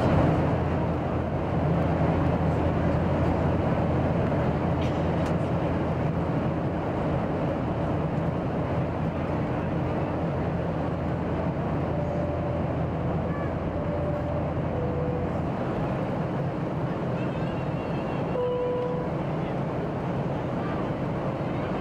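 Steady roar of airliner cabin noise in flight: jet engines and rushing air heard from inside the cabin. The deepest hum drops away about three-quarters of the way through.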